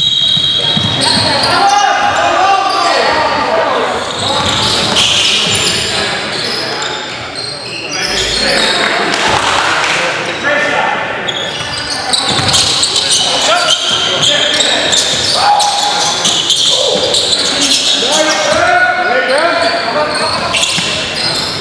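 Basketball game in a gymnasium: a ball dribbling and bouncing on the hardwood floor, with players calling out and the sound echoing around the hall.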